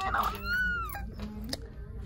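A woman's breathy exhale followed by one short, high-pitched squeal that rises and falls, an excited reaction, with a small click about a second and a half in.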